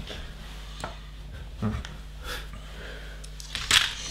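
Loose plastic LEGO pieces being handled and sorted on a table: a few scattered small clicks and rattles, then a louder, sharper rustle near the end.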